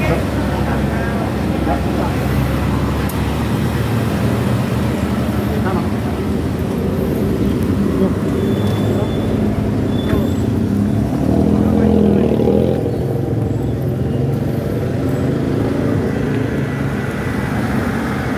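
Street traffic: cars running along a city road, with a louder swell about twelve seconds in.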